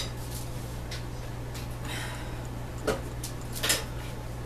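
A few light knocks and rustles of things being handled on a kitchen counter, spread through the second half, over a steady low hum.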